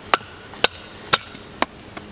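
Batoning: a wooden baton strikes the spine of a Battle Horse Knives Battlelore bushcraft knife, driving it down through a stick to split it. There are four sharp knocks, evenly spaced about half a second apart.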